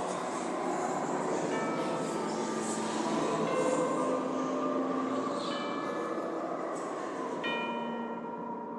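Steady rumbling, rattling noise with ringing bell-like tones struck about every two seconds, four times, the last the strongest: ambient sound from the Haunted Mansion ride between the stretching room and the boarding area.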